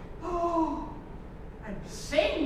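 A stage performer's voice: one short gasp-like vocal sound, falling in pitch, followed by an intake of breath near the end.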